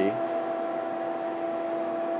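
Steady electrical or mechanical hum with held tones, an unchanging drone of equipment in the room.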